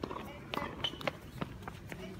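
Footsteps on a hard tennis court with a few sharp knocks, under faint voices.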